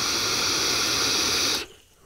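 A draw on an Eleaf Ello Pop sub-ohm tank, airflow control set to halfway: a steady rush of air through the airflow slots and firing coil, which stops about one and a half seconds in.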